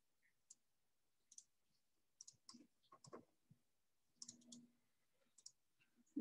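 Near silence broken by faint, scattered clicks of a computer mouse, about a dozen over a few seconds.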